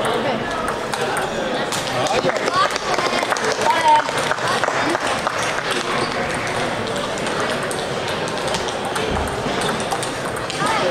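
Table tennis ball clicking repeatedly off bats and the table during rallies, in irregular quick ticks over a constant babble of voices in a large, echoing sports hall.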